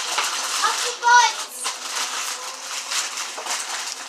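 Paper and packaging rustling and crinkling as presents are unwrapped, with a child's voice briefly about a second in.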